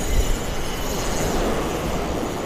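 Wind buffeting the microphone over breaking surf: a steady rushing rumble, heaviest in the low end.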